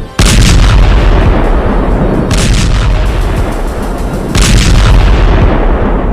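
Very loud explosions: a continuous deep rumble with three sharp blasts about two seconds apart, fading out near the end.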